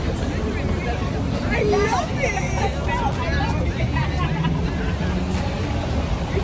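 Road traffic with a large coach passing close: a steady low engine rumble that settles into a hum near the end, with people's voices chattering.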